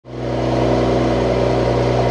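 Mercedes-AMG E53's 3.0-litre inline-six engine idling steadily.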